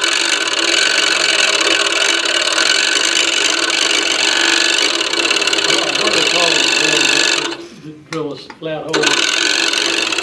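Scroll saw running with its blade cutting. Near the end the saw cuts out for about a second and then comes back up. Its speed is uneven, which the users put down to lumpy electricity.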